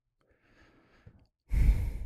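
A man's heavy sigh: one short, loud exhale about one and a half seconds in, after some fainter breathing.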